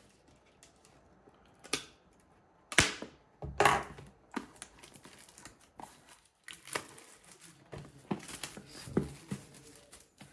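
Plastic shrink wrap crinkling and tearing as it comes off a cardboard trading-card box, in a run of sharp crackles and rustles.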